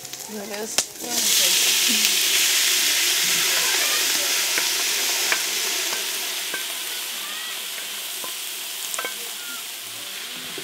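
Diced raw meat tipped into onions frying in very hot oil in a large aluminium pot: a loud sizzle starts suddenly about a second in and slowly dies down. Light scrapes of a wooden spatula stirring the pot come through it.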